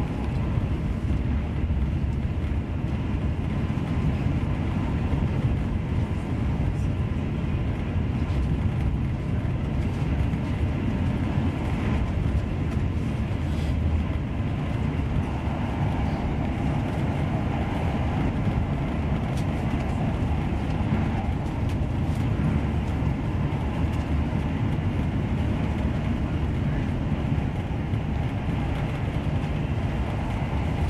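Steady running rumble heard inside a Mark 3 passenger coach of an InterCity 125 (HST) travelling at speed: wheels on the rails and the coach body vibrating, even throughout.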